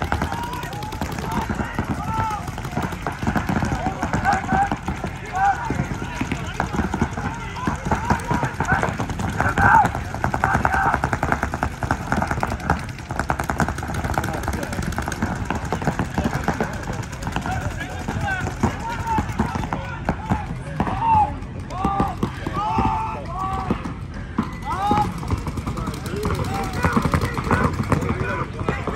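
Paintball markers firing rapid strings of shots during play, many shots in quick succession, with people shouting over them.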